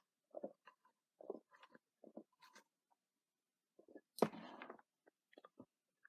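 Faint sipping and swallowing through a plastic drinking straw from a drink can: a string of short, soft mouth sounds, with one louder, brief noise about four seconds in.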